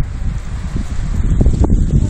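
Wind buffeting a smartphone's microphone: a loud, irregular low rumble that rises and falls in gusts.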